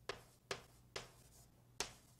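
Writing on a board, heard as four short, sharp taps at roughly two a second, over a faint low hum.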